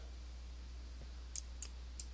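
A low steady electrical hum with three faint clicks in the second half, from a digital pen as the slide is marked up with handwritten ink.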